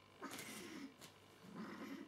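Bengal cat giving two low, drawn-out calls, each about half a second long and about a second apart.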